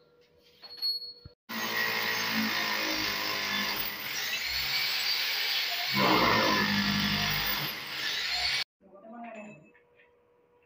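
Electric power drill running and boring into a concrete wall: a steady motor whine lasting about seven seconds that starts and stops abruptly, getting louder about six seconds in.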